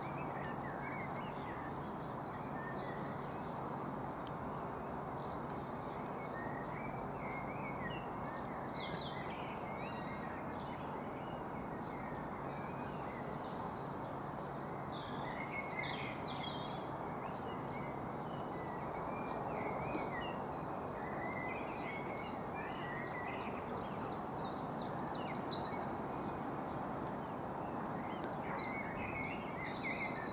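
Suburban outdoor ambience: a steady background hum of distant noise, with birds chirping and calling on and off throughout.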